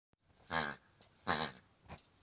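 Rubber hippo squeaky toy squeaking twice as a young German shepherd chews on it, each squeak short and shrill.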